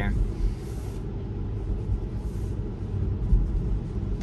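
Tesla's tyres on a wet road, heard from inside the cabin as a steady low rumble of road noise.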